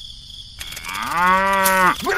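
A cow mooing: one long call starting about two-thirds of a second in, its pitch rising at the start and dropping away as it ends.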